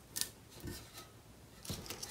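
Faint handling sounds from paper crafting at a table: one sharp click just after the start, then a few soft taps as a metal craft knife and the paper-wrapped tumbler are handled.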